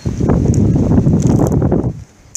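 Wind gusting across the microphone: a loud low rumble lasting about two seconds that cuts off abruptly.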